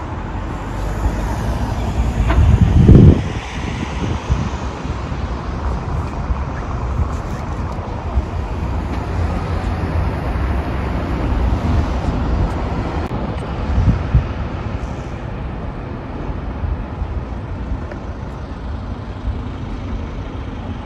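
City street traffic noise: a steady low rumble of vehicles, with a brief loud low surge about three seconds in and a smaller one near fourteen seconds.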